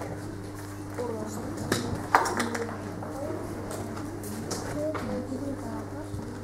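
Chalk on a blackboard as tally marks and arcs are written, with two sharp taps about two seconds in, over faint murmured voices and a steady low hum.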